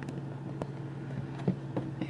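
A steady low hum under a few light clicks and taps from a plastic sauce bottle and food packaging being handled.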